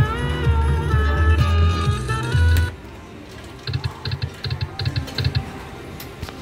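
Video slot machine playing a loud electronic win melody during a bonus payout, which stops about two and a half seconds in. About a second later comes a quick run of short electronic ticks, roughly five a second, for under two seconds.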